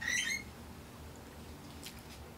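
Mostly quiet room tone. In the first half-second there is a brief high-pitched mouth sound from biting into a chicken wing, and near the end a faint click.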